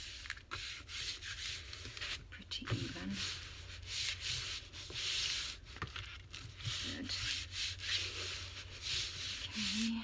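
Hands rubbing and smoothing sheets of paper flat against a journal cover: a run of dry, hissy rubbing strokes, some about a second long.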